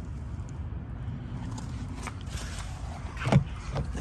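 Steady low outdoor rumble, then one sharp clack about three seconds in as the Jeep Gladiator's door handle is pulled on a locked door.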